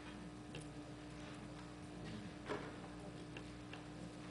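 Scattered small clicks and taps in a quiet hall, the loudest about two and a half seconds in, over a steady low hum.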